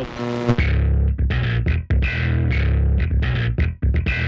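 Electronic music with a heavy bass line and a repeating beat, which comes in fully about half a second in.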